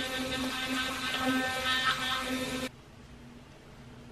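Vanity Planet electric toothbrush buzzing in the mouth during brushing, a steady hum with a wet scrubbing sound. It stops suddenly about two-thirds of the way in, leaving faint room tone.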